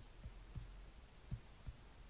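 Faint, soft low thumps at irregular intervals, five or so in two seconds, over quiet room hum.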